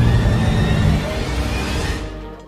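BMW 335i's N54 twin-turbo straight-six running as the car drives, a steady low rumble that eases slightly about a second in and fades near the end.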